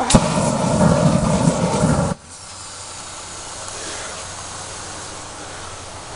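Axe body spray aerosol burning as it is sprayed into a flame: a click, then a loud rushing whoosh for about two seconds that cuts off suddenly. A quieter, steady hiss of flame follows.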